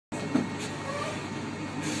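Single-deck bus's diesel engine idling with a steady drone close by.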